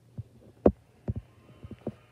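A few soft, low thumps at uneven intervals, the strongest a little under a second in, over a faint steady hum.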